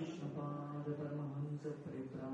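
A man chanting a mantra in slow, long-held notes, the pitch stepping only a little between them.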